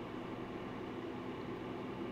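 Steady low background hiss with a faint, even hum: room tone of the recording, with no event in it.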